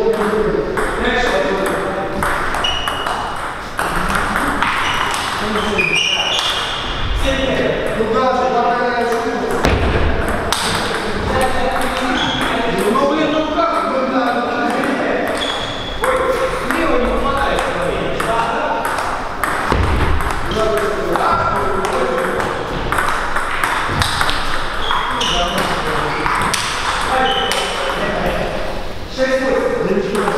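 Table tennis ball clicking off paddles and the table in rallies, many sharp ticks in quick succession, with people talking in the background.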